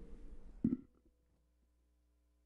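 A single short thump as a corded handheld microphone is set down on a desk, after which the microphone's sound cuts off to near silence.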